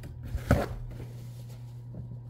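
A single short knock about half a second in, over a steady low hum.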